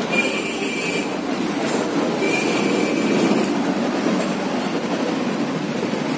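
Steady mechanical running noise, with a thin high squealing tone coming and going over it.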